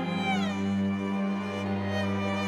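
Solo violin with orchestral accompaniment. The violin's high note, sung with vibrato, slides down in pitch about a quarter second in and settles on a lower note, over sustained low chords.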